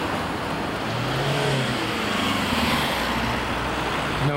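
Street traffic: a steady wash of road noise, with a nearby car engine rising and falling about a second in.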